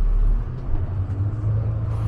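Double-decker bus engine running: a steady low rumble heard from inside the bus on the upper deck.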